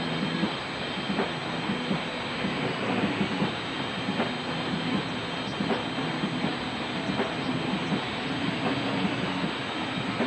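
A live rock band playing loud, with electric bass, guitar and drums, recorded close to the stage amplifiers so the sound is a dense, distorted wash with the drum hits poking through.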